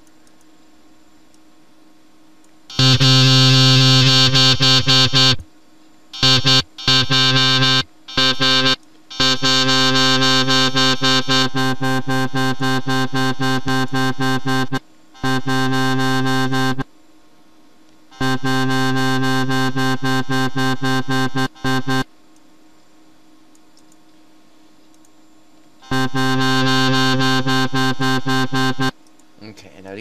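Synthesized wobble bass from FL Studio's 3x OSC, a single sustained pitch chopped into rapid even pulses, run through a distortion effect. It plays in several bursts of one to six seconds with short silences between.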